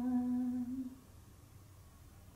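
A woman's unaccompanied voice holding the final note of a naat with her mouth closed, a steady hummed tone that stops about a second in.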